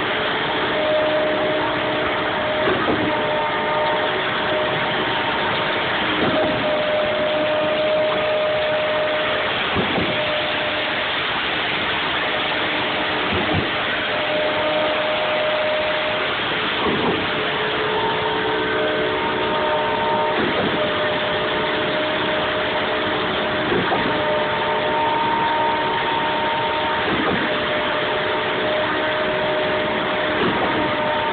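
Truck-mounted concrete pump running during a concrete pour: a steady engine and hydraulic drone with a thud about every three and a half seconds as the pump switches stroke.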